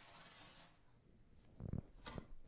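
Faint rubbing on a wooden drawer as a colour-wash stain is worked on, with a soft low bump near the end.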